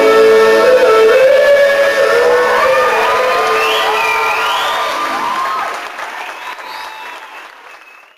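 The last held note of a sung number dies away in the first second or so, giving way to an audience applauding and cheering with whistles and whoops, which fades out near the end.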